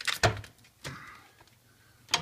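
A cluster of sharp knocks and clatter from hands moving things about in a kitchen sink cabinet, with one more knock just under a second in, then near quiet. No pump is running yet.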